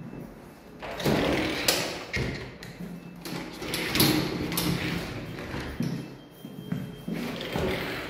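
Knocks and thuds from a built-in wooden wardrobe's doors being moved and pushed shut, several sharp knocks a second or two apart.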